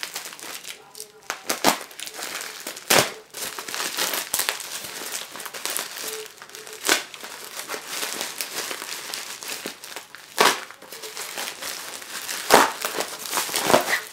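Plastic poly mailer crinkling and rustling as hands pull it open, in an irregular run of sharp crackles, loudest about three seconds in and twice near the end.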